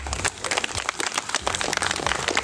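A crowd applauding with many hand claps, just after a song has ended.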